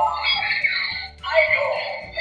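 A toy Ultraman Geed transformation device plays its electronic sound effects and music through its small speaker, set off as an Ultra Capsule is loaded. The sound comes in two loud stretches with a short break about a second in.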